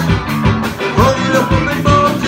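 Live ska band playing loudly, with drums, electric guitar and bass keeping a steady beat.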